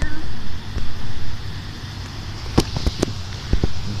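Wind rumbling on a phone microphone by open water, with a few sharp clicks about two and a half to three and a half seconds in.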